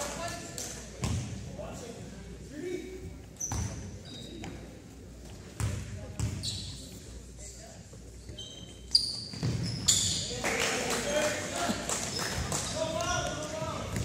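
A basketball bouncing on a hardwood gym floor in several separate thuds, with short high sneaker squeaks and voices around it in the gym hall.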